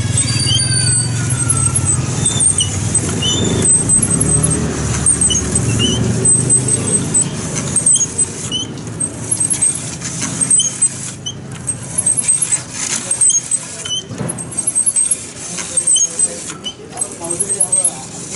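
A knife blade grinding against a large cord-driven abrasive sharpening wheel: a continuous rasping grind with short high squeaks recurring about every second, heavier in the first half and more uneven later.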